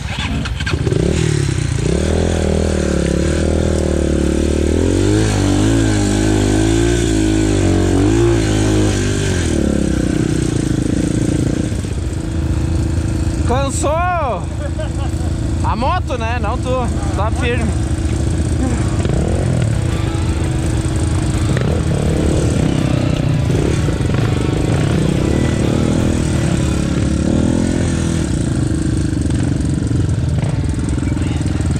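Off-road dirt bike engine running as it is ridden, heard from on the bike, its pitch rising and falling through the first ten seconds and then steadier. A few short wavering calls like voices break in about 14 seconds in and again around 16 to 17 seconds in.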